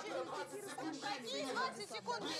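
Several voices talking at once, in Russian.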